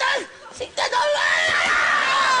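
A man's short kung-fu yells, then from about a second in one long scream that slowly falls in pitch: the comic cry of someone falling down a shaft.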